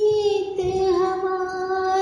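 A high singing voice holding one long, steady note in a Hindi/Urdu song about the monsoon.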